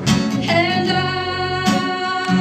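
Live band playing: strummed acoustic guitar with electric bass and fiddle, and one long note held over them for about a second.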